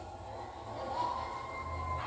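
A pause in speech, filled by a low steady hum of room background, with a faint steady high-pitched tone that comes in about a second in.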